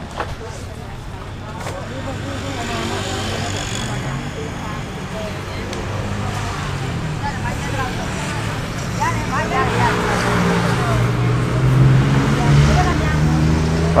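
A motor vehicle's engine running close by in a street, growing louder over the last few seconds, with people talking in the background.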